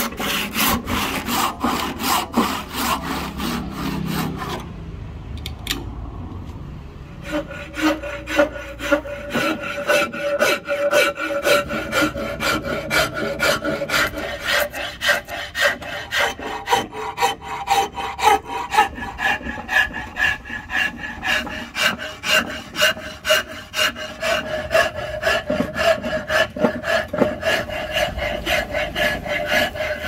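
Hand saw cutting through a curly redwood axe-handle blank with quick, even strokes. After a short quieter pause, a hand file rasps back and forth along the wood in steady strokes, with a pitched ring under them.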